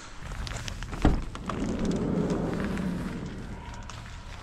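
A car passing on a wet road, its sound swelling and then fading over about two seconds, after a sharp knock about a second in.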